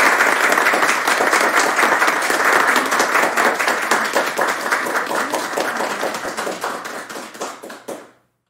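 Audience applauding, many hands clapping at once, thinning out and fading toward the end.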